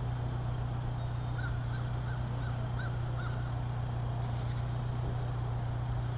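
A bird calls faintly about six times in quick succession, starting about a second and a half in, over a steady low hum.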